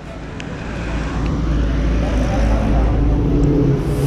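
A road vehicle's engine growing steadily louder as it approaches, over a low steady rumble.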